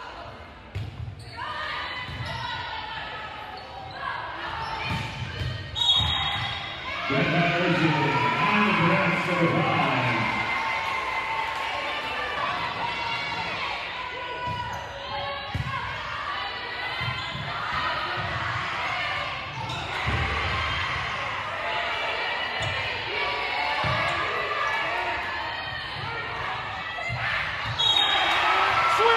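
Gymnasium sound during a volleyball game: players and spectators calling out and cheering, the volleyball being hit and bounced on the hardwood floor, and a short referee's whistle about six seconds in and again at the very end.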